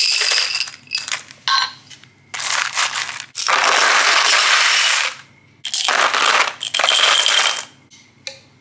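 Square glass mosaic tiles tipped out of a glass jar into a plastic tub, clattering and sliding over one another. It comes in about six pours with short pauses between them, the longest running nearly two seconds in the middle.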